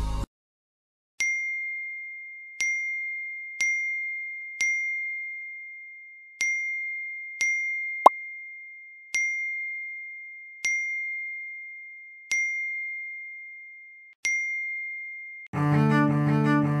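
Phone message-notification ding: one high chime repeated about ten times at uneven gaps of one to two seconds, each struck sharply and fading out. It signals incoming messages. A single short, sharp click comes about halfway through.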